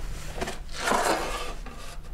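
A sheet of paper rustling as a letter is handled and unfolded by hand, loudest about a second in.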